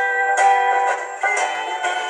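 Acoustic guitar strummed in chords, a fresh strum about every half second, sounding thin with no bass.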